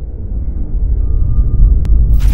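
Low rumbling sound effect of an animated logo sting, swelling in loudness. A faint steady high tone joins about halfway, and a single click comes near the end.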